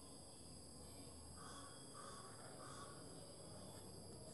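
Near silence: room tone with faint, steady high-pitched tones throughout, and three short faint sounds in the middle.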